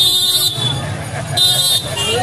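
A vehicle horn honking in short repeated toots, one ending about half a second in and another near the end, over the chatter of a crowded street.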